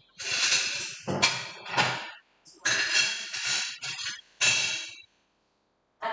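Dishes clattering and scraping in a kitchen cupboard as a ceramic plate is taken out, in two runs of clinks with short ringing.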